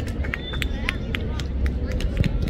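Scattered calls from players and spectators over a steady low rumble, with a brief thin high tone about half a second in.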